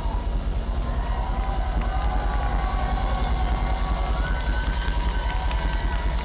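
Live rock band playing an instrumental passage with no singing: fast, even pulses of low bass under long held higher notes.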